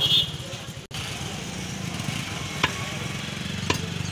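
A butcher's cleaver chopping beef on a wooden tree-stump block: two sharp chops about a second apart in the second half, over a steady low hum.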